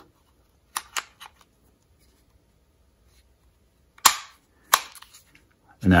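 Sharp metallic clicks of a SAR B6C 9mm pistol being reassembled, as the slide is seated on the frame and the takedown lever is pushed back in: two light clicks about a second in, then a loud, sharp click about four seconds in and a smaller one just after.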